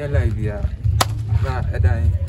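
A single sharp crack about a second in, over men talking.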